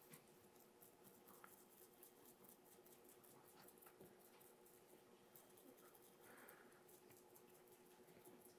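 Near silence: room tone with a faint steady hum and faint, light scratching of a glue brush on cartridge paper.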